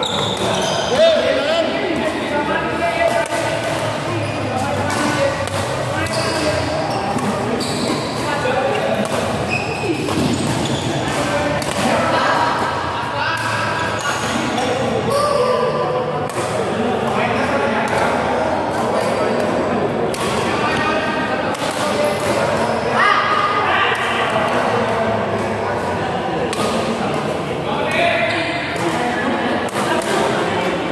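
Doubles badminton rally: repeated sharp racket hits on the shuttlecock, with people talking in the background, in a large indoor hall.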